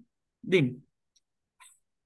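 A man's voice saying one short syllable about half a second in, falling in pitch, then a faint breath.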